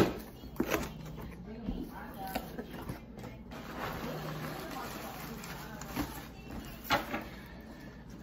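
Cardboard shipping box being ripped open by hand: a sharp tear right at the start, then scattered rustles and knocks as the flaps are pulled back and the contents handled, with plastic wrapping crinkling near the end.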